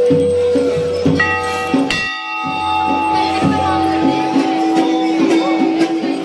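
Music with a steady, evenly repeating beat, over which large brass temple bells are struck twice, about one and two seconds in, their tones ringing on for several seconds.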